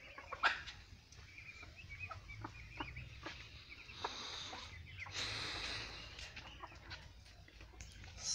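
Domestic chickens clucking softly in a farmyard, with a few short clicks and brief rustling noises about four and five seconds in.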